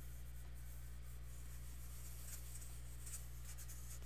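Tissue wiping dry-erase marker off a whiteboard: a faint, steady scrubbing, with a steady low electrical hum underneath.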